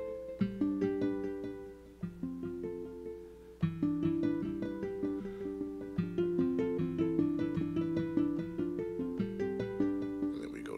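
Roland MV-1 Verselab playing a melodic sequence of plucked, guitar-like notes. The notes overlap and change every fraction of a second, with a stronger attack every second and a half or so.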